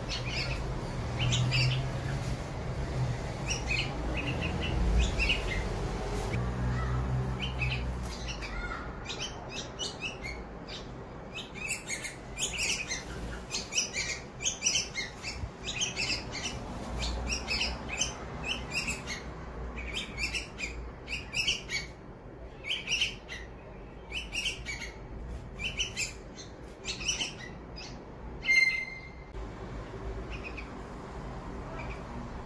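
Bulbul fledglings giving begging calls, short high chirps at an adult feeding them. The chirps come in quick series that grow denser from about ten seconds in, over a low rumble during the first several seconds.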